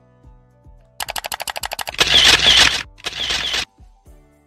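Camera shutter sound effect over soft background music: a rapid run of about a dozen shutter clicks lasting about a second, then two longer, louder mechanical sounds, the first the loudest.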